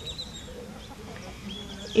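Chickens clucking faintly in the background, with a short call at the start and another about one and a half seconds in.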